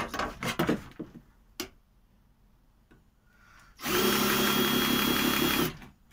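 A few short knocks from handling on the workbench, then after a pause a Ryobi cordless drill runs at one steady speed for about two seconds, starting and stopping abruptly near the end.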